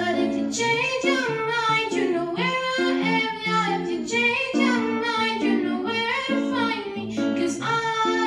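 A teenage girl singing a pop song solo, with gliding, held notes, over strummed electric guitar chords.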